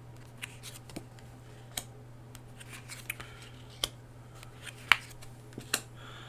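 Tarot cards being dealt and laid down on a wooden desktop: about six sharp card snaps and taps, a second or so apart, the loudest about five seconds in. A low steady hum runs underneath.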